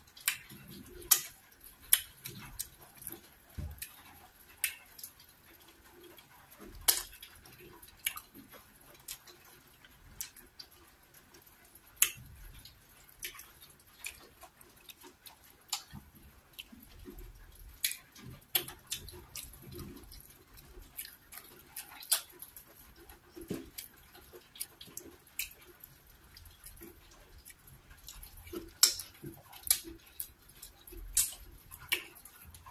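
Close-miked eating sounds: wet lip smacks, mouth clicks and chewing from eating cocoyam fufu with slimy ogbono soup by hand. Short sharp smacks come irregularly, several in each second or two.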